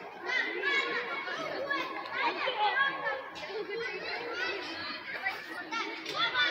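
Children playing: many overlapping children's voices chattering and calling out together, with no single voice standing out.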